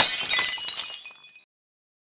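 Glass-shatter sound effect: one sharp crash at the start, followed by tinkling high-pitched ringing that fades out over about a second and a half.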